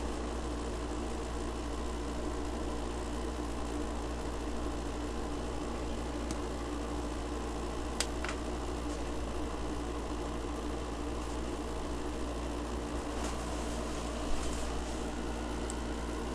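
Steady low background hum, like a fan running in a small room, with one sharp click about halfway through and a faint knock near the end.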